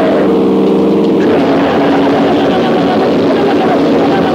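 Loud, distorted band music from a crossover thrash demo recording: heavily distorted guitars hold a chord for about the first second, then go into denser, faster riffing.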